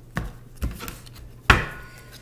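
Stacks of tarot cards set down and knocked against a wooden tabletop: two light knocks, then a much louder one about one and a half seconds in.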